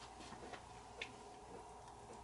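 Near-silent room tone with a few faint, irregular clicks, the clearest about a second in.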